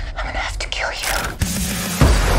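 A woman's whispered, breathy voice over dark film-trailer music. About one and a half seconds in, the voice gives way to a steady low tone.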